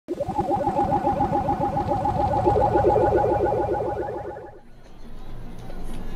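Live band music: a plucked string instrument playing fast repeated notes over drums, fading out about four and a half seconds in.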